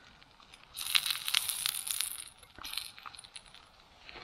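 A Frikadelle frying in butter in a small metal pot on a spirit stove, turned over with a fork: a burst of sizzling about a second in that lasts a second and a half, then a shorter, weaker spell near the end.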